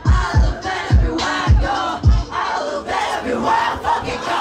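Live hip hop performance: loud shouted vocals from the rapper and the crowd over a beat. Deep bass-drum hits fall in pitch, about two a second, through the first half.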